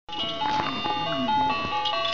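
A simple electronic tune from a baby toy: clear, chime-like single notes stepping up and down, each held a fraction of a second.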